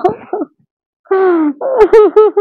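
A woman wailing and sobbing in short, falling cries. They stop for about half a second, then come back as one long falling wail and a run of broken sobs.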